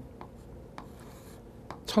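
Chalk writing on a blackboard: a few faint, light taps and scratches as a numeral is chalked on.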